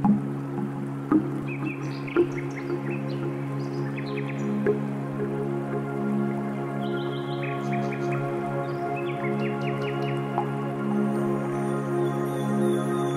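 New-age meditation music: a steady low drone of several held tones. Sharp struck accents fall about a second apart in the first couple of seconds, and short high chirps are scattered over it.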